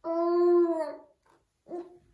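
Baby's voice: one long, steady, drawn-out vocal sound lasting about a second that trails off at the end, then a short second sound near the end.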